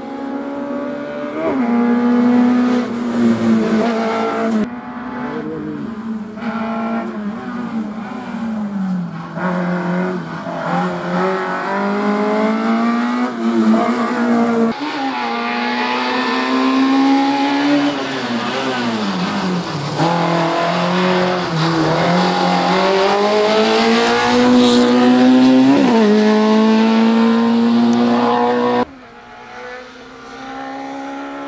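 A small four-cylinder Autobianchi A112 slalom car's engine revs hard, its pitch rising and falling again and again as the driver accelerates, lifts and changes gear between the cones. The sound jumps abruptly a few times.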